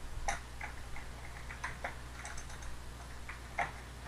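Computer keyboard typing: short, irregular key clicks, roughly three a second.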